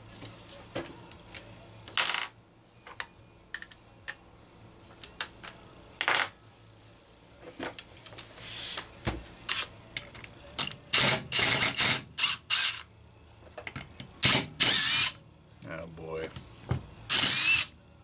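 Cordless DeWalt drill-driver running in short bursts to back screws out of a chainsaw's housing. About five quick runs come in a row around eleven to twelve seconds in, with single runs before and after. Light clicks of tools and parts fall between the runs.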